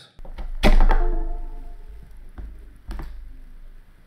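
A LAN Turtle USB network adapter being handled and plugged into a USB cable on a desk: a sharp thunk just under a second in, a low rumble that fades, and two smaller knocks later on.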